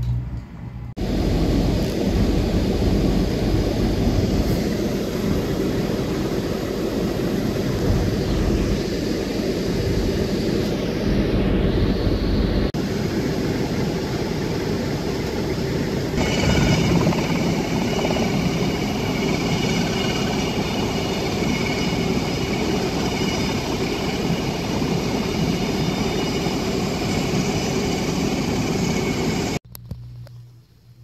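Loud, steady engine and running-gear noise heard from inside a military vehicle. A set of high whining tones joins about halfway through.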